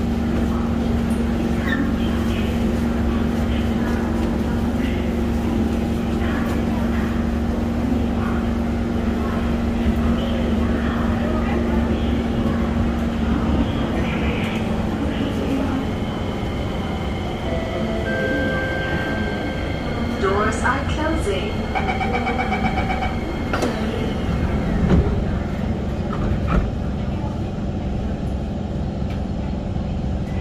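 Inside a Kawasaki Heavy Industries C151 metro car standing at a platform: a steady hum and low rumble from the stationary train under passenger voices. About two-thirds of the way in, the door-closing warning beeps sound for a few seconds and the doors shut with a knock.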